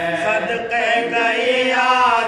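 A group of men chanting a marsiya, the Shia elegy for Imam Husain, together with a lead reciter, holding long drawn-out notes that slowly bend in pitch.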